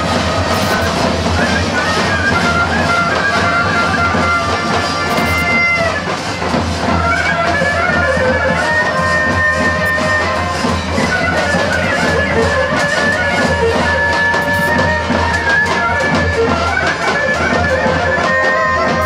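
Bulgarian folk horo tune on a bagpipe (gaida), with the melody moving over a steady drone and a large tapan drum beating underneath. It plays continuously at an even, loud level.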